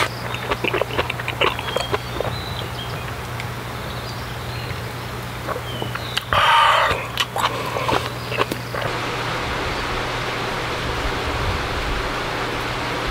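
Close-up eating sounds: a run of light chopstick clicks and chewing, then a louder burst about six seconds in. For the last few seconds there is an even, steady hiss.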